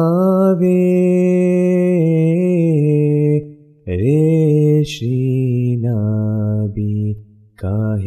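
A solo male voice chanting an Ismaili devotional ginan unaccompanied, drawing out long, slowly bending held notes. He breaks for breath about three and a half seconds in and again near the end, starting a new phrase after each.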